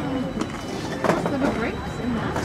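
Indistinct background talk, with no clear words.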